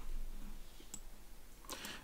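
Quiet pause in a video-call conversation: low room tone with faint clicks, and a short noise near the end just before speech resumes.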